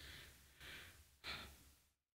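Near silence, with two faint breaths from a man at a close microphone, one about halfway and one shortly after.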